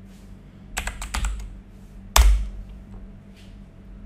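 Computer keyboard keystrokes: a quick run of about four key presses, typing 'yes' at a terminal prompt, then one louder, sharper keystroke about a second later.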